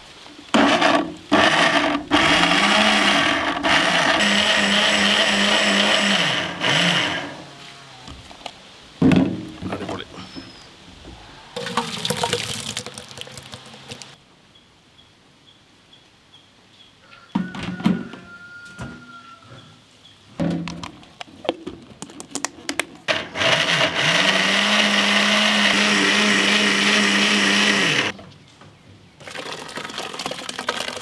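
Electric mixer-grinder with a stainless-steel jar grinding grated coconut, run twice for about five seconds each: the motor spins up to a steady whine, holds, then winds down. Between the two runs the steel jar and lid clink as they are handled.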